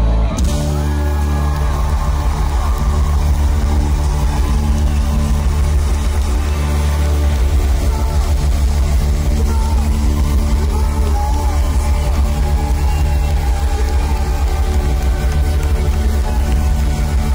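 Live rock band playing loud through a PA: drums, keyboards and electric guitars, heaviest in the bass, running steadily throughout.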